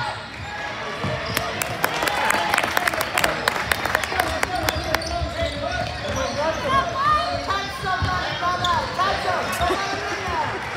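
Basketball bouncing on a hardwood gym floor, with a quick run of sharp knocks in the first half and voices in the background, echoing in the large hall.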